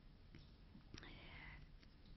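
Near silence: room tone, with faint whispered speech about a second in.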